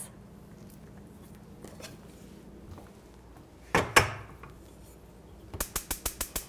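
Kitchen handling at a stovetop with a stainless saucepan and wooden spoon: one sharp knock about two-thirds of the way through, then a quick run of light clicks near the end.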